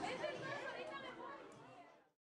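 Many students' voices chattering over one another, fading out gradually near the end.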